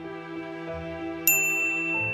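Soft background music, and about a second and a quarter in a single bright notification-bell ding sound effect that rings on for about a second.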